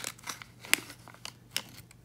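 A foil pouch crinkling and crackling in the hands as a clear adhesive strip is drawn out of it. There are a few sharp crackles, the loudest about three-quarters of a second in, and it quietens near the end.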